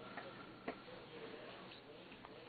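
Faint room noise with a few soft ticks and one sharp click about two-thirds of a second in.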